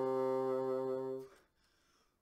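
Solo bassoon holding one sustained low note, which dies away about a second and a half in, a breath between phrases of a hymn tune.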